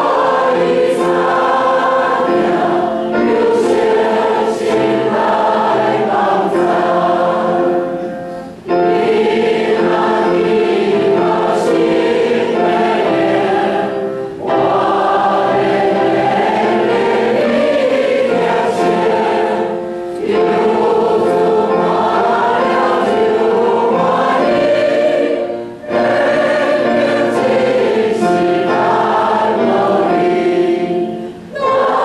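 Many voices singing a hymn together in sustained phrases, each phrase ending in a brief break about every six seconds.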